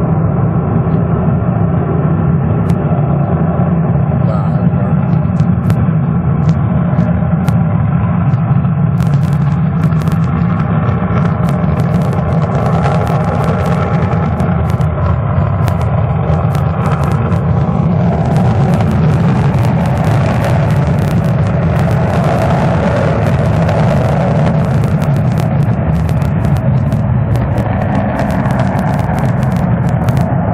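B-1 bomber's four afterburning turbofan engines at full power on the takeoff roll: a loud, steady jet rumble with sharp crackles from about a third of the way in, growing harsher past the middle.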